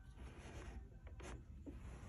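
Faint rubbing with a few light ticks over a low steady hum.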